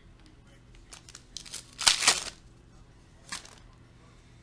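Plastic wrapper of a Donruss Optic basketball card pack being torn open and crinkled in a few short bursts, loudest about two seconds in, with one more brief crinkle near the end.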